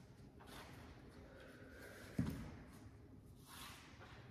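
Faint slow deep breathing during a held yoga stretch, with a soft airy breath about half a second in and another near the end. A single dull thump a little past halfway is the loudest sound.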